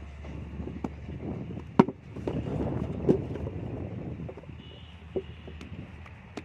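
Hand moulding of mud bricks: wet clay and sand being handled and scraped around a brick mould, with a sharp knock a little under two seconds in and a second knock about a second later.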